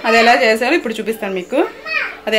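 A woman speaking Telugu with a lively, sliding intonation; no other sound stands out.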